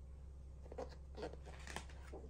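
Page of a hardcover picture book being turned by hand: a few short, faint papery rustles, the last near the end, over a steady low hum.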